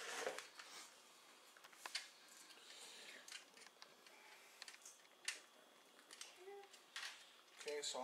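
Faint, scattered crackles and clicks of a plastic bacon package's clear wrap being pulled open by hand.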